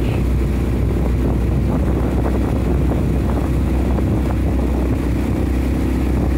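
Outboard motor of a coaching launch running steadily at low speed, a low even hum.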